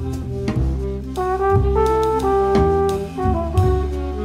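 Swiss jazz quartet playing a slow, melancholy waltz: trombone and alto saxophone hold melody notes over double bass and drums.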